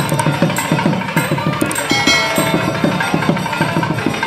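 Temple music with fast, continuous drumming, as played during the lamp-waving offering (aarti) to the goddess.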